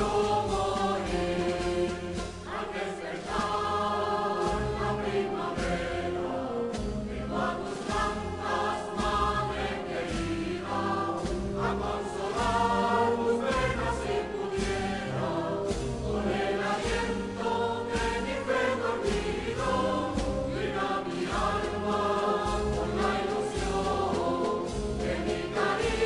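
Spanish Holy Week processional march played by a wind band: sustained brass and woodwind chords with a slowly moving melody over a slow, steady low drum beat.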